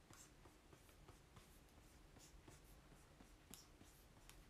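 Near silence with faint, short scratching strokes of a pen writing on paper, one slightly louder near the end.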